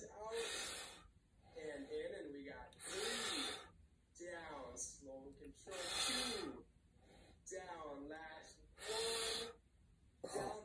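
A man breathing hard through a set of one-arm dumbbell raises: four sharp, hissing breaths about three seconds apart, the loudest sounds here, with brief voiced sounds between them.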